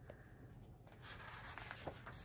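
Faint rustling of magazine paper as a hand rubs over and handles the pages, livelier from about a second in, with a few soft ticks.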